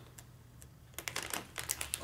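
Plastic snack pouch handled in the fingers while it resists opening. It is quiet at first, then a quick run of sharp crinkling clicks comes in the second half.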